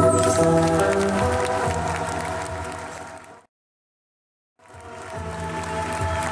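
Live band and singers holding a sustained chord that fades out over about three seconds. Then comes a second of dead silence, a break in the recording, before music with applause fades back in.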